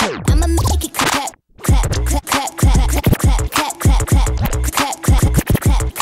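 Vinyl scratching on a turntable over a hip-hop beat: a record dragged down in pitch at the start, a brief cut to silence about a second and a half in, then fast chopped scratches over heavy bass hits.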